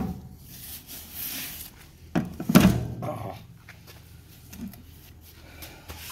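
A few knocks and clunks from a sheet-metal electrical box being handled: a sharp knock at the start and a louder one about two and a half seconds in.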